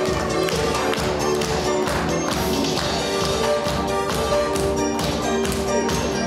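Music with sustained notes over a regular percussive beat.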